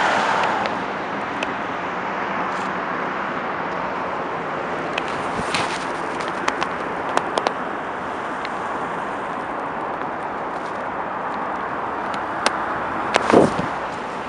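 Steady roar of city traffic heard outdoors, with scattered sharp clicks and knocks and a louder bump near the end.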